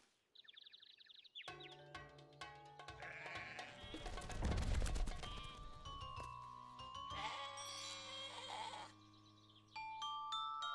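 Cartoon sheep bleating over the score music: a short wavering bleat near the start, then music with many quick notes over a steady bass from about a second and a half in, with more bleating later.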